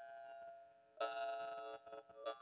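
Handmade 'Agate B1' jaw harp (drymba) being played: a plucked drone with a stack of overtones rings and fades, then is plucked again about a second in and rings on brightly.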